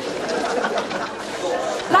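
Background chatter of several people talking at once, with a clearer man's voice breaking in at the very end.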